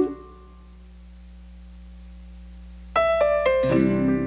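Keyboard or piano music from the show's band: a held chord dies away at the start, leaving a quiet steady hum, then new chords start abruptly about three seconds in as the next number begins.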